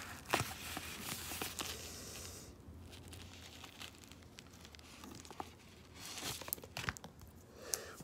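Yellow padded paper mailer crinkling as a plastic graded card slab is slid out of it. The crinkling is faint and loudest in the first second or two, with a few light clicks of the plastic slab being handled near the end.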